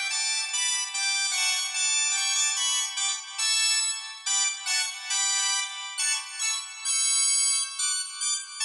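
Organ music played high up the keyboard: a melody of short held notes changing every half second or so, with no bass.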